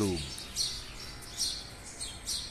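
Small birds chirping in the tree canopy: a few short, high chirps spaced about a second apart, over a faint steady outdoor background.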